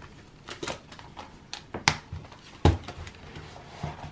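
Handling of a ring binder with plastic cash pockets: a scatter of light plastic clicks and taps, with a sharper click just before halfway and a louder knock about two-thirds of the way in.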